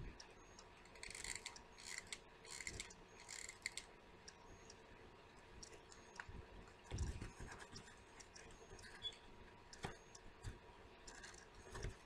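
Faint handling sounds of artificial fabric leaves being pressed onto a foam pumpkin: light rustles and small clicks, with a couple of soft thumps.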